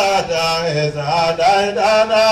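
A single voice chanting an Islamic devotional chant in long, melodic, gliding notes.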